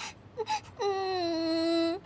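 A couple of short clicks, then a long whining note that slides down slightly and is held for about a second before cutting off.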